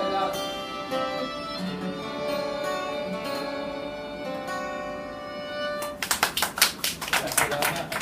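Three violins and an acoustic guitar playing the last bars of a song, ending on a long held chord. About six seconds in, a small group of people starts clapping.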